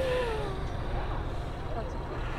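Steady low background rumble with faint voices.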